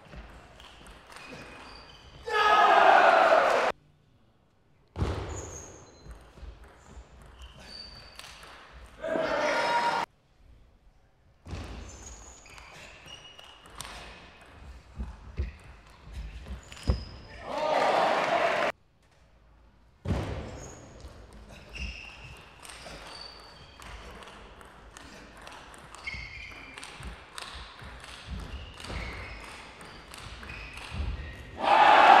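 Table tennis rallies: the ball clicking sharply off the bats and the table in quick runs. Three times a rally ends in a short loud burst of shouting and cheering, echoing in a large hall.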